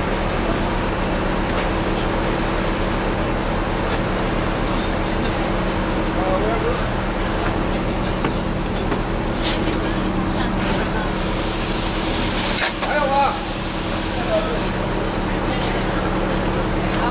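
MCI 96A3 coach's diesel engine idling steadily, heard from inside the coach at the front. From about eleven to fifteen seconds in, a hiss of compressed air from the coach's air system sounds over the idle.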